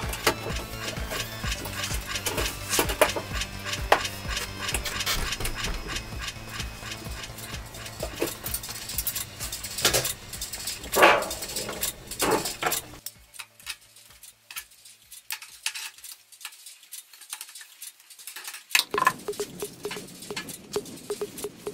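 Background music over clanks, taps and rattles of galvanized sheet-metal panels being handled and fitted together. The music stops about two-thirds of the way through, leaving scattered metallic clicks and taps.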